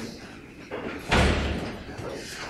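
A single heavy thud about a second in, with a deep low end, fading quickly.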